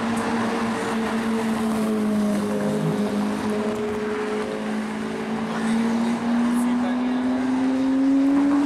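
Lamborghini Murciélago V12 engine running at low revs as the car drives by, a steady pitched drone that dips slightly midway and then climbs as the car accelerates near the end.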